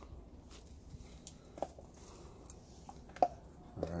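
Quiet background with a few faint, short clicks and one sharper click a little over three seconds in.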